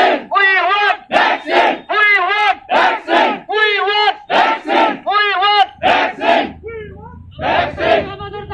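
Crowd of protesters chanting slogans in a steady, repeating rhythm, with a short break near the end before the chant picks up again.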